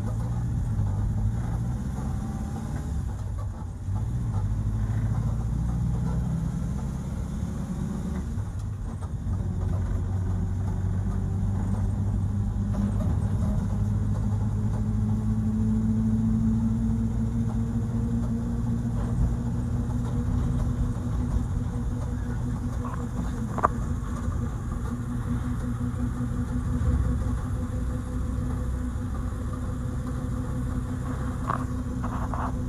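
A 1952 Morris Minor driving along, heard from inside the car: a steady low engine drone with road noise. The engine note climbs gradually from about halfway through, and there is one sharp click about two-thirds of the way in.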